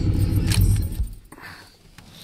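A 1992 Chevrolet K1500's engine idling, heard from inside the cab through an exhaust with a Flowmaster Super 10 muffler, shuts off about a second in, with a click and a jingle of keys at the ignition.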